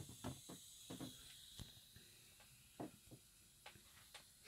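Near silence, with a few faint clicks from the Aiwa AD-F770 cassette deck's transport as it goes into play.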